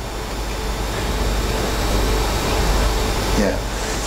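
Steady rushing room noise with a low hum underneath, growing slightly louder over the few seconds, then a brief 'yeah' near the end.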